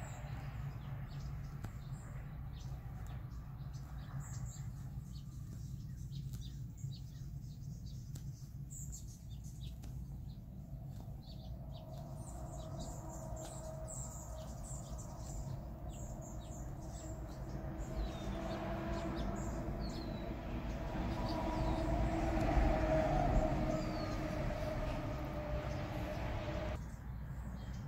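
Small birds chirping again and again in the background over a steady low hum. A low drone swells through the second half and is loudest near the end.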